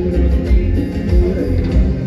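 Live cumbia band playing, with a heavy, steady bass beat.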